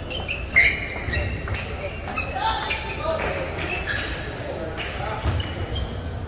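Table tennis rally: a celluloid ball clicking off paddles and the table, a run of sharp strikes in the first few seconds, the loudest about half a second in, then the rally stops. Voices chatter steadily in the background.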